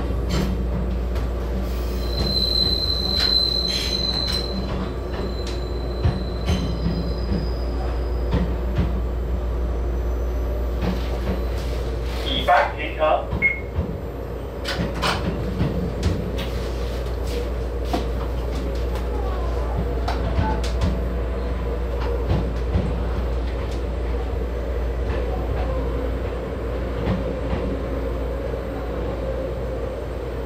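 Taiwan Railways EMU800 electric multiple unit running, heard from inside the driver's cab: a steady rumble of wheels and motors with scattered clicks as the wheels cross rail joints and points. A high wheel squeal sounds about two seconds in and lasts a couple of seconds.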